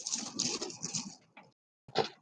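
Strands of turquoise stone beads rattling and clicking against one another as they are lifted and handled, with one sharper clatter near the end as they are set down on the tray.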